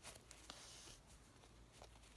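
Very faint sounds of hand cross-stitching: soft ticks of the needle and a brief, faint rasp of embroidery thread drawn through the fabric about half a second in.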